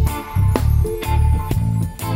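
Live rock band playing an instrumental passage with electric guitars, bass guitar and drum kit, with a steady rhythmic bass line and drum hits.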